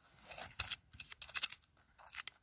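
Thin metal rod scraping and jabbing into gravelly soil and pebbles: a few short, scratchy scrapes in the first second and a half.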